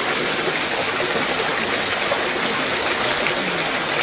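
Steady rushing noise of flowing water, even throughout with no distinct events.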